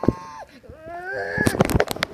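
Handling knocks and rubbing as a phone is carried along with a plush toy, with a cluster of knocks near the end. A voice makes wordless sounds that rise in pitch about a second in.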